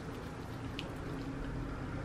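Quiet room tone: a faint steady hiss and low hum, with one faint tick about a second in.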